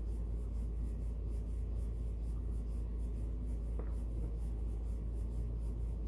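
Small paintbrush stroking paint onto a wooden birdhouse, short brushing strokes at roughly three a second, with a single light click about four seconds in. A steady low rumble runs underneath.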